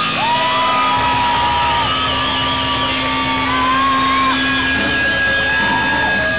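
Live rock band playing amplified guitars and drums, with long held, bending notes over a dense steady wash of sound, and voices whooping and shouting over it.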